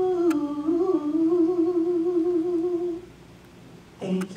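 A woman sings a long held note into a handheld microphone, close to a hum, with a slow wavering vibrato and a slight fall in pitch. The note ends about three seconds in.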